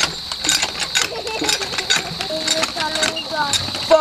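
Cast-iron hand water pump clanking as its handle is worked up and down, in a string of irregular metallic clicks and knocks, with short bursts of children's voices about halfway through.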